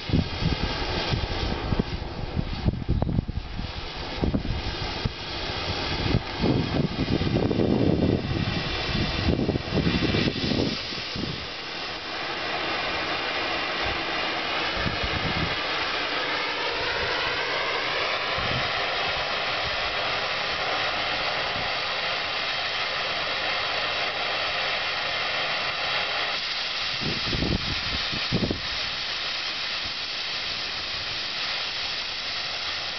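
Oxy-acetylene torch flame hissing, with uneven low rumbling gusts for the first ten seconds or so. A little past the middle, a whistling tone in the hiss glides upward over a few seconds as the torch valves are adjusted, and then the hiss holds steady.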